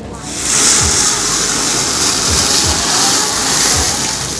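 Frying pan of flaming dumplings sizzling loudly on a gas burner as liquid is ladled into the hot oil, a steady hiss that starts a moment in while the pan flares up into flames.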